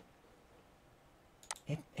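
Near-silent room tone, then a single sharp click about one and a half seconds in, just before a man's voice starts.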